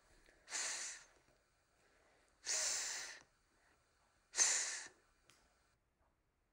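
A voice making the voiceless "th" sound, as in "three", three times: a breathy hiss of air between tongue and teeth, about two seconds apart.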